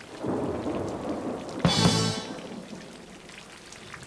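Rock band's song intro: one loud full-band chord hit with a crash cymbal about a second and a half in, left to ring and die away. Under it is a noisy rumbling wash.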